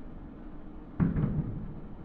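Distant fireworks shells bursting: two booms in quick succession about a second in, trailing off in a low rumble.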